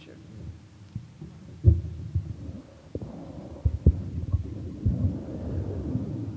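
A series of irregular, low thumps and bumps from a wired microphone being handled and passed along the panel table to the next speaker.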